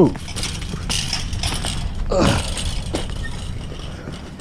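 Chain-link fence rattling and clinking as a person climbs over it, with scattered clicks. A short vocal exclamation falls in pitch about two seconds in.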